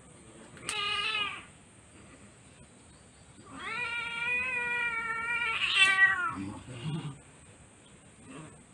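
Siamese cat meowing in protest while her claws are clipped: a short meow about a second in, then a long drawn-out meow that drops in pitch at its end. Two sharp clicks, one at the start of the first meow and one late in the second.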